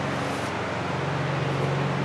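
Steady machine hum with an even hiss of moving air.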